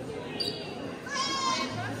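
Indoor shopping-centre background of distant voices, with two brief high-pitched sounds: a short one about half a second in and a longer one of about half a second a little past the middle.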